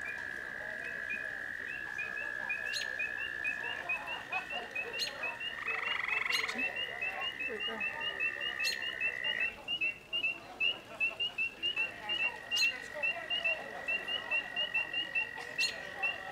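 Frogs calling: one long, steady, high-pitched trill that breaks off twice and starts again, over a quick series of short chirps at about three a second. A few sharp clicks are heard now and then.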